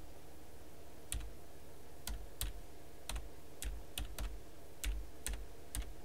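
Keys tapped on a computer keyboard: about ten separate, unevenly spaced clicks, over a steady low background hum.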